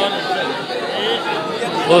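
Speech only: several voices talking at once, a murmur of chatter among a small gathering.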